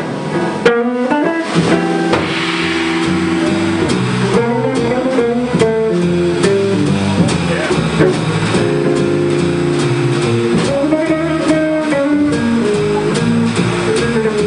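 Live jazz trio: a hollow-body electric guitar takes the lead, entering with a fast rising run about a second in and then playing melodic lines over upright bass and drum kit.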